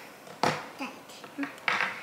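A couple of short crinkles from a plastic snack-bar wrapper being handled, about half a second in and again near the end, with a quiet spoken "yeah" between them.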